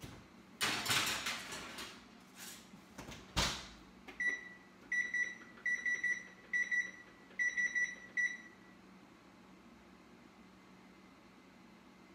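Oven door and baking sheet clattering, ending in a sharp thump as the door shuts, then a run of short, high electronic beeps from the electric range's control panel as its timer keys are pressed, the last beep held a little longer.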